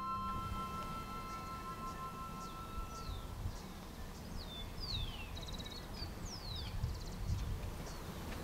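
A held musical chord fades out in the first few seconds. Then small birds call with short, falling chirps and a quick trill, over a steady low outdoor rumble.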